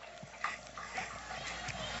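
Faint voices over a low steady hum, with a thin steady tone in the background.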